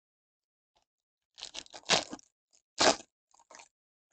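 Foil trading-card pack wrapper crinkling and tearing as it is ripped open: a few short crackly rips, the loudest about two seconds in and another about three seconds in.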